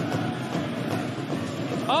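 Steady ice-rink game noise during live play: skates scraping and carving on the ice, with a murmuring crowd in the arena.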